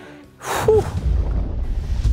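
A person blows out a short, breathy "whew" exhalation, followed by a steady low rumble.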